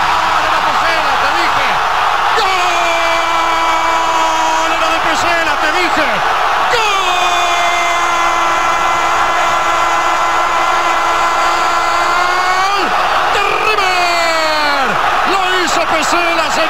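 A football commentator's long, drawn-out "gol" shout, one held, high voice sustained for several seconds at a stretch and restarted after brief breaths, over a stadium crowd cheering.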